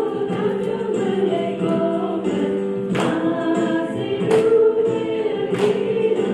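A choir singing a gospel song in held, overlapping voices, with sharp clap-like hits about every second and a half from halfway in.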